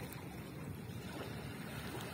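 Small sea waves lapping on a pebble shore, under a steady low rumble of wind on the microphone.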